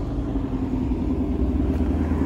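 Ford Mustang Shelby GT350's 5.2-litre flat-plane-crank V8 idling with a steady, even low rumble.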